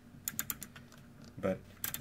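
Rotary wafer selector switch clicking through its detents as it is turned back and forth quickly, working freshly sprayed DeoxIT contact cleaner into the contacts. There is a quick run of clicks at first and a few more near the end.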